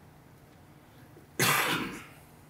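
A man coughs once into his fist, a single loud cough about one and a half seconds in, after low room tone.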